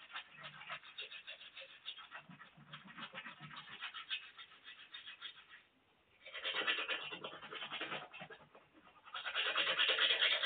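A toothbrush scrubbing teeth in quick back-and-forth strokes, which break off briefly a little before six seconds in and then come back louder.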